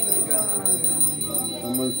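Metal bells jingling with a steady high ring, over low voices.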